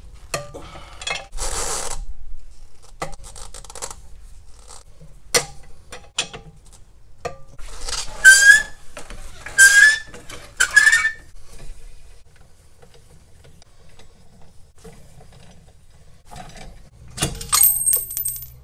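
Hand tools and metal parts clinking and scraping at a Ford Model A's front wheel hub as the wheel is taken off, with three short, loud squeaks about eight to eleven seconds in and a bright ringing metal clink near the end.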